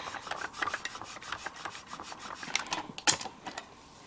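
A stamp block being pressed and worked down onto clear stamps on an acrylic stamping platform: a rapid run of small ticks and scrapes of plastic on plastic, with a sharper click about three seconds in.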